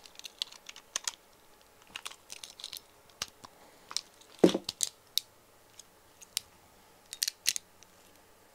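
Irregular small plastic clicks and taps from a Beyblade and its launcher being handled, with one louder knock about four and a half seconds in.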